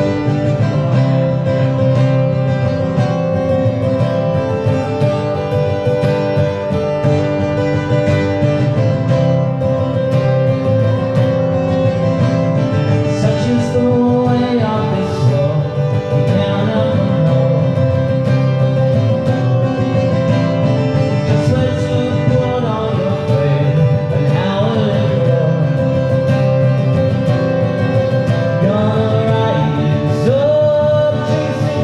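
Acoustic guitar strummed steadily, with a man singing along to it from about halfway in.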